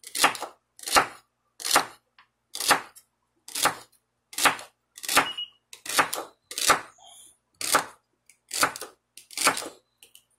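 Kitchen knife chopping celery on a wooden cutting board: about a dozen sharp, evenly paced cuts, roughly one a second.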